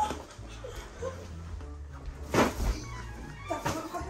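Music with a steady bass line playing under a pillow fight, with two short soft swishes of pillows swung and striking, about two and a half seconds in and again near the end.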